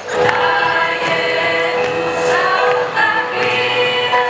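A mixed youth choir singing a song together, with a steady held note sounding underneath the voices.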